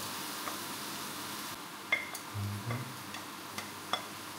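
Diced vegetables sizzling in a frying pan, with several light clicks and taps as a spatula scrapes diced carrots off a ceramic plate into the pan.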